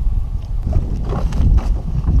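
Wind buffeting the microphone of an action camera on an open boat deck: a loud, uneven low rumble.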